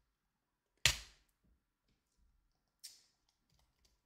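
A single sharp computer-keyboard key press about a second in, then a faint click near the three-second mark, against near silence.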